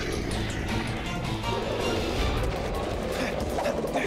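Dramatic background music from a cartoon's action score, with a dense low rumble under it.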